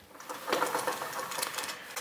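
A pull-down projection screen being drawn down by hand, its spring roller rattling in a fast run of clicks starting about half a second in.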